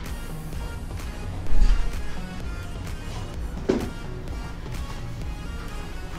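Background music, with a short, loud gust of breath rumbling on a clip-on microphone about a second and a half in: blowing to cool a spoonful of hot soft tofu stew.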